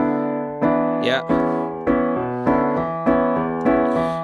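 Digital piano playing a slow rock exercise: a left-hand bass riff under right-hand pulse chords (E7(no3) over a D bass), the chord struck evenly about every 0.6 seconds.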